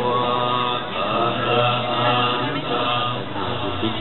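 Buddhist chanting by a group of voices: a steady recitation on held tones.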